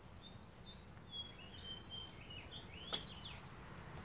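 Small birds chirping quietly in the background, a run of short high chirps, with a single sharp click about three seconds in.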